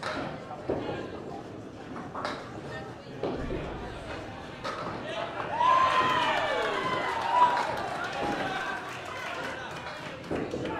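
Candlepin bowling alley: balls knocking and clattering into pins and lanes several times, the loudest crack about seven seconds in, over background voices. Midway a high call slides down in pitch.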